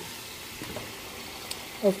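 Steady sizzling hiss of sliced onions and garlic frying in oil in a pan, with a faint tick about one and a half seconds in.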